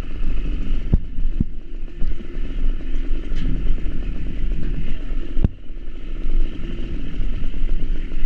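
Motorcycle engine running as it rides along a rough gravel lane, under a steady low rumble, with sharp knocks about a second in and again past five seconds.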